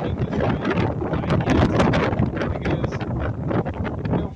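Wind buffeting the microphone: a rough, uneven rumble with many small crackles.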